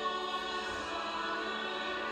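Background music with a choir holding long, steady chords.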